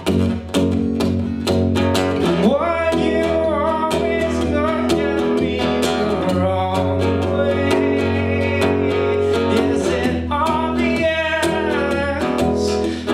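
Steel-string acoustic guitar strummed in a steady rhythm. A man's singing voice comes in over it in stretches, around a third of the way in and again near the end.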